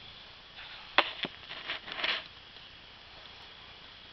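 A few sharp knocks and rustles from the camera being handled and set in place, about a second in and again near two seconds in. After that there is only a faint steady hiss.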